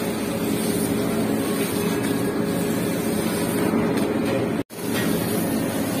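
Steady machine hum of kitchen ventilation, even throughout, cut by a sudden, very brief dropout about three-quarters of the way through.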